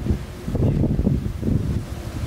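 Wind buffeting the microphone: a loud, gusting low rumble that rises and falls.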